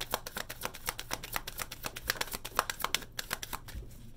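Deck of tarot cards being shuffled by hand: a quick run of crisp card flicks that thins out and stops about three and a half seconds in.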